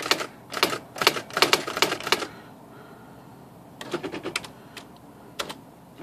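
Brother Professional electronic daisy-wheel typewriter typing in 10 pitch: a quick run of print-wheel strikes for about two seconds, a pause, then a few more strikes and one last single strike.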